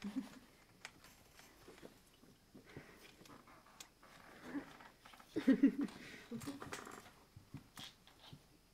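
A man's short wordless vocal sounds, low grunts and murmurs in a few separate bursts, the loudest a little past halfway, with a few faint knocks in between.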